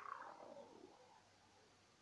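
Near silence, after a man's raspy voice trails off and fades out in the first second.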